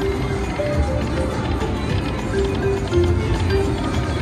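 Whales of Cash video slot machine playing its free-spin bonus music while the reels spin: short held notes at a few pitches over a low pulsing beat.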